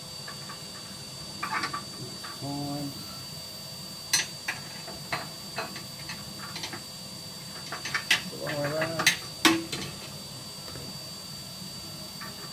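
Metal clicks and knocks as steel parts, a bar among them, are fitted back into the firebox of a Woodwarm Phoenix inset multi-fuel stove. The knocks are scattered, with sharper ones about four, eight and nine seconds in.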